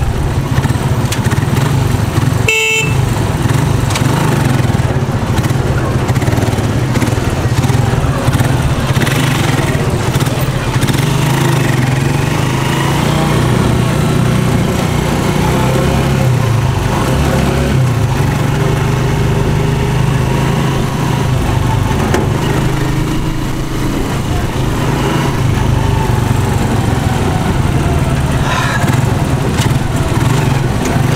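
Small motorcycle engine of a sidecar tricycle running steadily in stop-go city traffic, its pitch shifting a little with speed. A brief vehicle horn toot sounds about two and a half seconds in.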